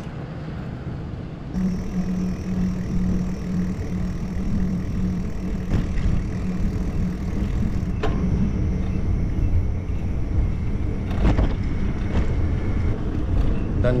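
Wind on the microphone and road noise from a moving bicycle, with a motor vehicle's engine humming steadily nearby from about a second and a half in, fading after about eight seconds. A few sharp clicks sound along the way.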